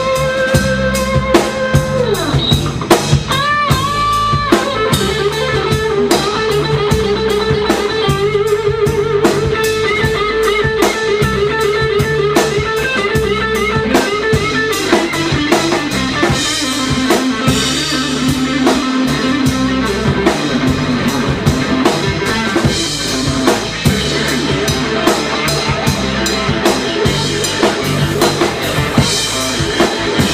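Live blues-rock band playing an instrumental passage: an electric guitar plays a lead of long held notes that bend and waver, over a steady drum kit and bass rhythm.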